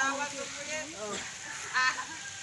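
Overlapping voices of onlookers at a backyard sparring match, with a short, loud honk-like call near the end.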